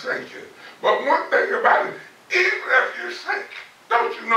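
Speech only: a man preaching a sermon in short, loud phrases with brief pauses between them.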